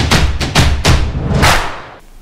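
Short music transition sting: heavy bass thumps with several sweeping whoosh hits in quick succession, fading out near the end.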